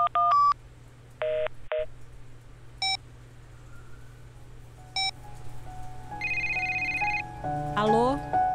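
Mobile phone keypad tones as a number is dialled: a quick run of three beeps, two lower beeps, then single beeps a couple of seconds apart. About six seconds in, a trilling electronic phone tone sounds for about a second, and music begins near the end.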